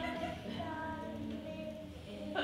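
A song sung in high voices, with held notes rising and falling in a melody.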